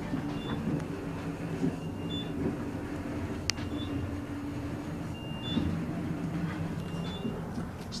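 Fujitec traction elevator car in travel, heard from inside the cab: a steady low hum and rumble of the ride, with one sharp click about three and a half seconds in.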